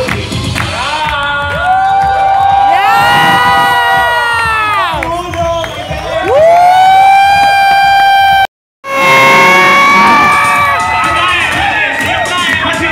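A crowd cheering loudly, many voices calling out in long sliding cries, over dance music. The sound cuts out completely for a moment about eight and a half seconds in.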